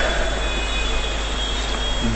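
Steady background noise of the talk's recording: an even hiss with a low hum underneath, without change or distinct events.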